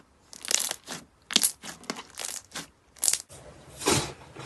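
Fingers pressing and poking slime: a run of short crackling squishes, about two a second. Near the end comes a louder crunch as fingers break into the dried, crisp crust of an iceberg slime.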